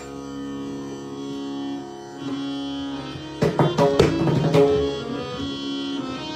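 Harmonium playing a lehra melody in long held notes, with no drumming. About halfway through, tabla and pakhwaj strokes join in, several a second, over the harmonium.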